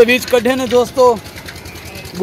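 A voice speaking for about the first second, over a steady mechanical running sound that carries on alone after it stops.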